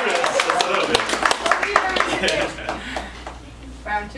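Scattered clapping from a small audience, with voices mixed in, thinning out and dying away about two and a half seconds in.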